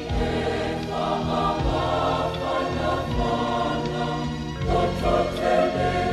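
A choir singing a slow hymn in several parts, with long held chords that change every second or two.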